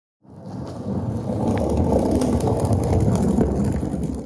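Rolling rumble sound effect of a giant jelly donut rolling down a hill: a low, gritty rumble that swells in over the first second and then holds steady.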